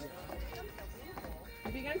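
Sneakers stepping and thudding on a hollow wooden deck as several people dance, with women chatting and a laugh near the end.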